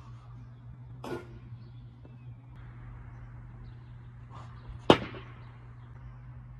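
A voice shouts "Oh!" about a second in. Near the end comes a single sharp, loud crack, the loudest sound here, of a plastic wiffle ball striking a hard surface, over a steady low hum.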